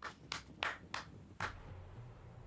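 A person clapping their hands in applause: five quick claps, about three a second, ending about a second and a half in.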